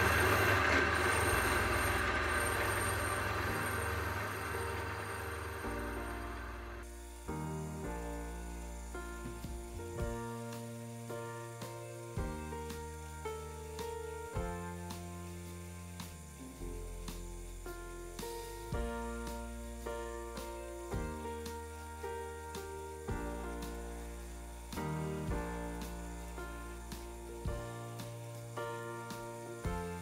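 Background music: a bright sustained sound fades over the first several seconds and stops abruptly, then pitched notes change in steps over a steady bass line.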